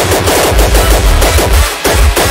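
Uptempo hardcore electronic track with rapid, dense, distorted percussive hits over heavy bass. The bass cuts out briefly near the end before the drums come back in.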